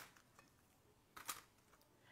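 Near silence, with a faint brief pair of clicks a little over a second in as pre-boiled potato slices are set into a foil-lined baking pan.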